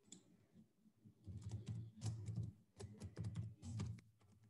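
Typing on a computer keyboard: a quick, uneven run of key clicks starting about a second in, picked up by a video-call microphone.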